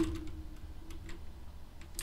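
A few sparse, faint clicks of computer keyboard keys as a command is typed into a terminal.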